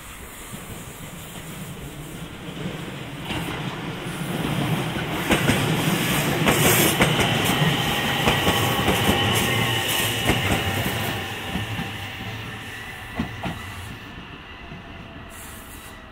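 JR West 227 series electric multiple unit running past close by: a rumble that builds and fades, with wheels clicking over rail joints and a high steady whine while it is loudest. Two last clicks come near the end as it moves away.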